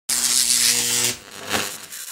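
Logo intro sound effect: a loud buzzing whoosh with a steady low hum that cuts off about a second in, followed by a softer swell shortly after.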